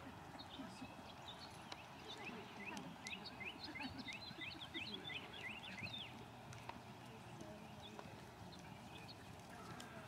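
Horse trotting on soft arena sand, its hoofbeats faint and muffled. A quick run of short, high, rising chirps sounds from about two to six seconds in.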